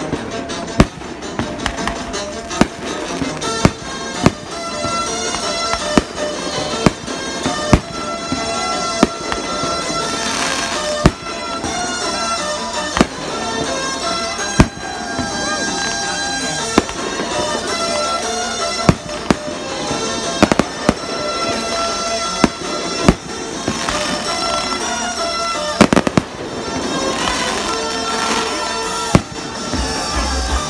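Aerial fireworks shells bursting, sharp bangs about once a second, a few coming in quick clusters.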